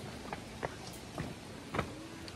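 Footsteps on the plank deck of a bamboo hanging bridge: irregular knocks and clacks as people walk across, the loudest near the end.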